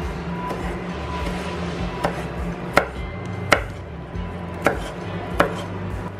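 Chef's knife thinly slicing rolled shiso and mint leaves on a wooden cutting board, the blade knocking sharply on the board about five times at an uneven pace in the second half.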